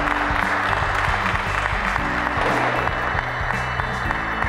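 Audience applauding steadily over background music.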